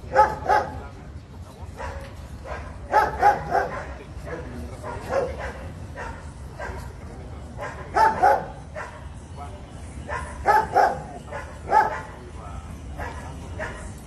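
A dog barking in short runs of one to three barks every couple of seconds.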